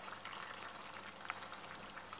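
Faint sizzling and simmering of pork, peppers and tomatoes cooking in a stainless steel pot on a gas burner, with a few light clicks, one a little louder just past halfway.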